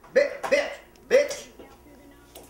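Speech only: a voice shouting three short, loud words in quick succession, then a pause.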